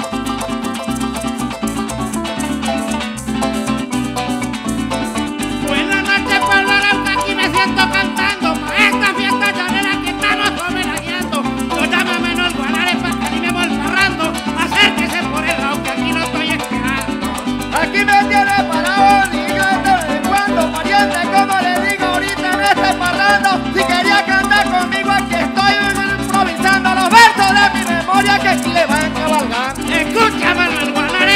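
Live Venezuelan llanera music: a plucked harp with maracas keeping the rhythm, and a coplero singing into the microphone from about six seconds in.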